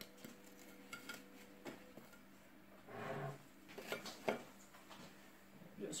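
Faint scattered clicks and light knocks of crisp meringues being handled and set down on a china plate, with a few sharper ticks about four seconds in. A faint steady hum runs underneath.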